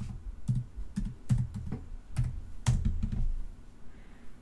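Computer keyboard typing: an uneven run of about nine keystrokes, stopping a little after three seconds in.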